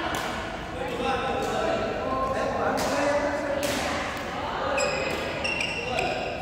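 Badminton rackets striking the shuttlecock every second or so, each sharp hit echoing in a large sports hall, over indistinct voices in the hall.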